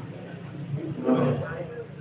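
Men's voices talking in a group, with one voice breaking out loudly about a second in.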